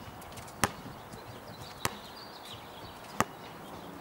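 A basketball bouncing on an outdoor hard court: three sharp smacks a little over a second apart, over steady outdoor background noise.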